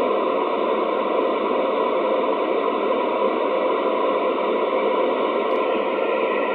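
Steady FM static hiss from a Kenwood TS-2000 transceiver's speaker, tuned to the ISS 2 m downlink, in the gap between the astronaut's transmissions when no voice signal is coming through.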